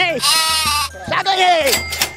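Goat bleating twice, the second call falling in pitch.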